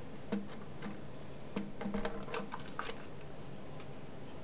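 A new plastic toilet fill valve clicks and knocks against the porcelain tank as it is pushed into its mounting hole and seated. The light clicks come singly at first, bunch together in the middle, and one more comes near the end.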